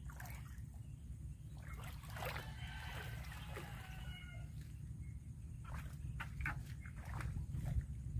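Rustling of water spinach leaves and light splashing as an angler moves a long fishing pole and line through the weeds, over a steady low rumble. A distant rooster crows between about two and four seconds in.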